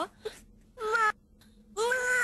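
A young girl crying in short, high wailing sobs, about a second apart.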